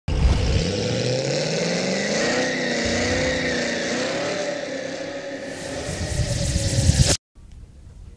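Car engine revving. Its pitch climbs over the first couple of seconds and then wavers up and down. A rising rush of noise builds near the end and cuts off suddenly about seven seconds in.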